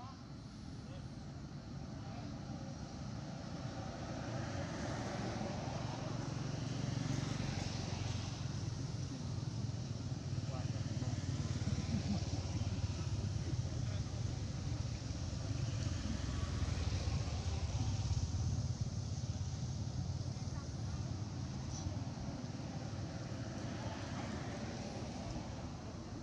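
Outdoor background noise: a steady low rumble that grows louder over the first several seconds and eases slightly near the end, with indistinct voices in it.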